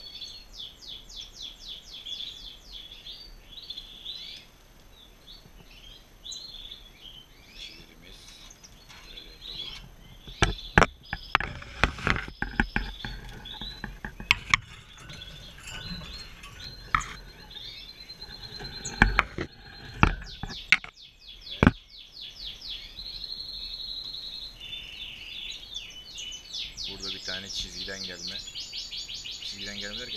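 Caged European goldfinches singing and twittering, with quick chirps and trills throughout. Between about ten and twenty-two seconds in, a series of sharp knocks and rattles from the cage being handled stands out as the loudest sound.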